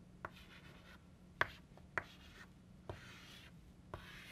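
Chalk on a blackboard drawing small circles and connecting lines: about five sharp taps as the chalk meets the board, each followed by a short scratchy stroke.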